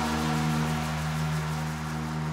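Electronic dance music in a breakdown: a held low synth chord with no drums, slowly fading.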